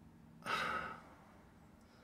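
A person sighing once: a short breathy exhale about half a second in, fading out within half a second.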